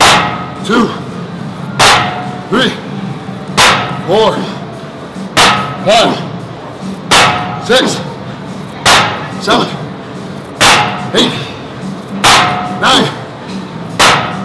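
A weight thudding on each rep of a gym set, about every 1.7 seconds, eight times, each thud followed by a strained grunt from the lifter. Background music plays underneath.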